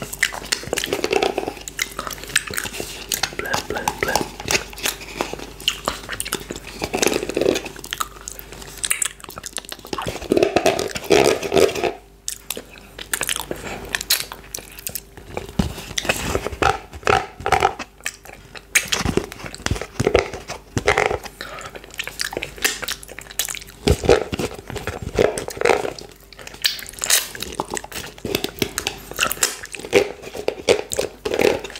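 Close-miked wet mouth sounds as coconut yoghurt is licked off fingers and eaten from the tub: a steady run of sticky lip smacks, sucking and tongue clicks. There is a short lull just after twelve seconds.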